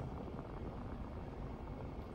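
Steady road and engine noise inside a moving car's cabin: a low, even rumble with no distinct events.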